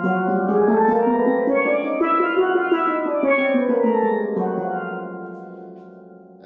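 Double seconds steel pans played with mallets: a fast chromatic scale, alternating between the two drums, running up and then back down. The last notes ring and die away near the end.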